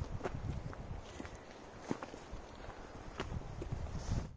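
Faint footsteps on a dirt forest trail, with scattered light ticks and crunches at uneven spacing.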